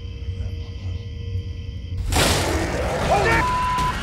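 A loud, rough roar starts suddenly about halfway through, the cry the hunters take for a Bigfoot. A man shouts over it and a censor bleep sounds near the end.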